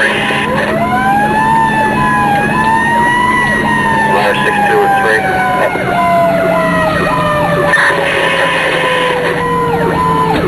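Fire truck siren: its wail climbs quickly near the start, then falls slowly and steadily in pitch. A second tone switches on and off about twice a second, over a steady low hum.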